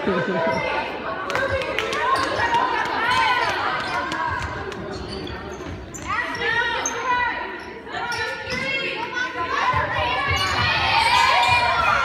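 Basketball game play in a gym: a ball bouncing on the court and sneakers giving short squeaks on the floor, echoing in the hall.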